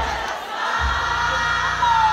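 Club crowd shouting and cheering over loud dancehall music with deep bass hits.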